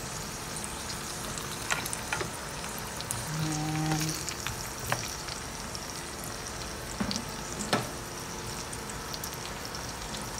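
Potato wedges and sliced onion sizzling steadily in hot oil in a nonstick pan, with a few sharp clicks as a spatula knocks against the pan while stirring.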